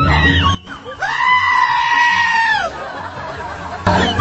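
Goat bleating: a short call at the start, then one long drawn-out bleat of about a second and a half that falls away at its end.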